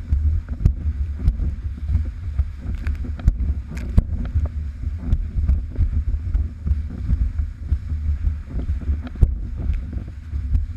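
Wind buffeting the microphone of a camera mounted on a windsurf rig under sail: a heavy, gusting low rumble that rises and falls throughout. Scattered sharp ticks and knocks come through over it.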